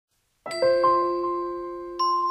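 Chime-like intro jingle: after about half a second of silence, three bell-like notes strike in quick succession and then ring on, slowly fading.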